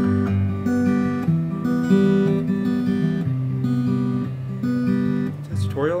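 Steel-string acoustic guitar fingerpicked: low bass notes alternating with plucked higher strings in a steady, ringing arpeggio pattern. A man's voice comes in right at the end.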